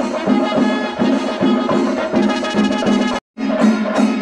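Kerala temple-festival procession music: an ensemble of drums and cymbals with sustained horn tones, playing a steady beat of about three strokes a second. The sound cuts out briefly a little over three seconds in, then resumes.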